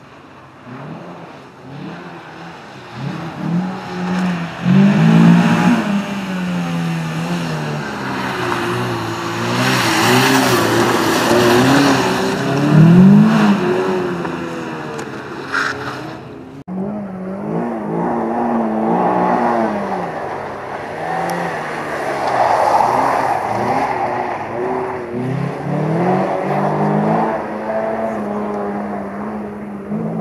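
Renault Clio rally car's engine revving hard, its pitch climbing and dropping back again and again through gear changes and cornering. The sound cuts off abruptly about halfway through and picks up again straight away.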